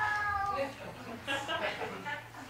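A drawn-out, meow-like vocal call, falling slightly in pitch, that fades out about half a second in, followed by short bursts of chuckling laughter.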